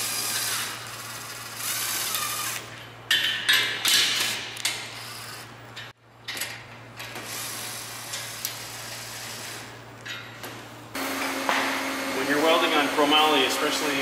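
Bosch cordless drill/driver with a socket bit running in several short bursts, each with a motor whine, driving bolts into a steel bracket plate. About 11 seconds in it gives way to a man's voice.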